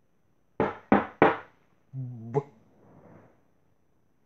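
Three sharp knocks in quick succession, about a third of a second apart, followed a moment later by a short pitched vocal sound.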